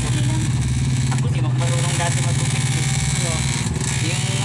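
Electric hair clippers buzzing steadily while cutting hair, a constant low hum, with faint voices in the background.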